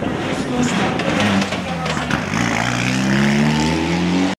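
Rally car engine pulling away, its note rising steadily through the second half, over crowd chatter.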